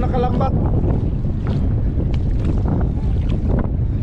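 Wind buffeting the microphone: a loud, steady low rumble. A voice is heard briefly at the very start.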